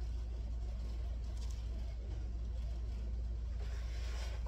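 Steady low hum of room tone with no speech, and a faint rustle of hair being handled about a second and a half in.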